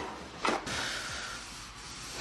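A sheet of paper towel torn off a roll with a short rip about half a second in, then steady paper rustling as the towel is handled.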